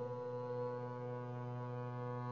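Double bass bowed on one long, steady low note, rich in overtones.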